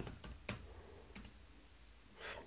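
A few faint computer keyboard keystrokes in the first half second: the last letters of a typed command and the Enter key, the first stroke the loudest.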